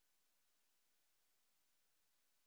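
Near silence: only faint steady hiss from a muted audio feed.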